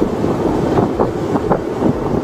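Steady rumbling and rustling noise on a police body-camera microphone, like wind or handling noise.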